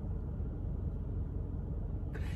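Steady low rumble with faint hiss inside a parked car's cabin, with no distinct events.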